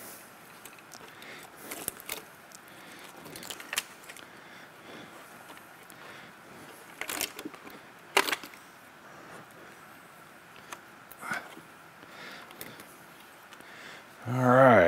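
Handling noise: scattered light clicks, knocks and rustles as gloved hands lift and shift a plastic high-voltage battery junction box and its attached cables. The loudest knock comes about eight seconds in.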